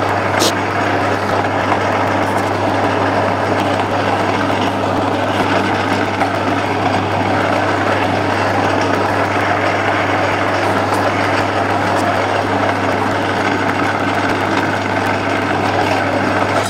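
Metal lathe running with its chuck spinning, a steady, even hum of the motor and gearing with no cutting heard.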